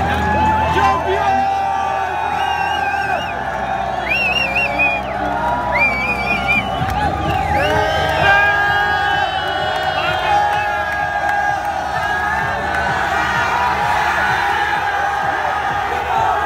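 Stadium crowd cheering and whooping, many voices shouting over each other, with high wavering calls a few seconds in.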